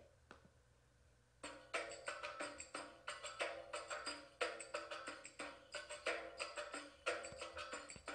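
Preview playback of a Middle Eastern percussion track in a Saidi rhythm, slowed by 10% without changing its pitch. It starts about a second and a half in with steady, sharp drum hits, several a second.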